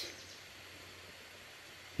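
Faint, steady background hiss of outdoor ambience, with no distinct sound standing out.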